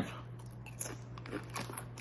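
A Doritos tortilla chip being bitten and chewed, with a few faint, separate crunches.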